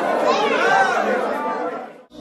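Several people talking over one another at a table, the chatter fading out near the end.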